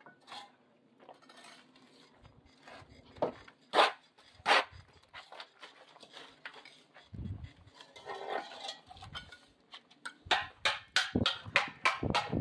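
Irregular sharp knocks and clinks of bricklaying work, with ceramic bricks and a mason's trowel, thickening into a quick run of knocks near the end.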